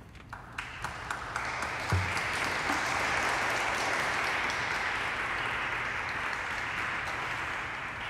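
Applause: a few scattered claps at first, filling in within about a second and a half into steady applause. A low thump comes about two seconds in.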